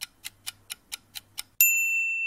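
Countdown-timer sound effect: a clock ticking about four times a second, about seven ticks, then a single bell-like ding about a second and a half in that rings on, marking the end of the countdown.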